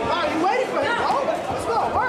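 Several voices talking and calling out over one another: chatter of the spectators and corner people around the ring.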